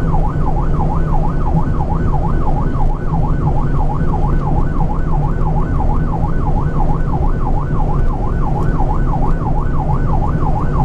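Emergency siren in a fast yelp, its pitch sweeping up and down about three times a second without a break, heard inside a moving truck's cab over the steady drone of the engine and road.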